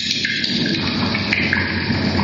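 Improvised electronic noise music played live on hand-built electronic boxes and a mixing desk: a dense crackling texture, with higher bands of noise that switch abruptly in pitch every second or so.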